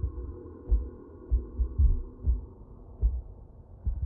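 Muffled film sound design: deep heartbeat-like thuds about every half second over a steady low drone.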